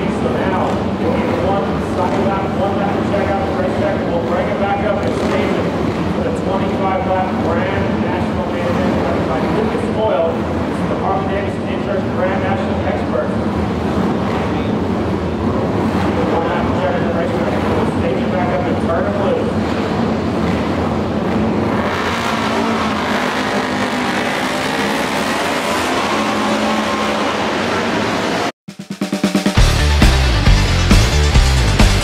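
Several flat-track racing twin-cylinder motorcycles running together at the start line, their engine notes rising and falling, mixed with indistinct voices. The sound cuts off suddenly near the end and rock music starts.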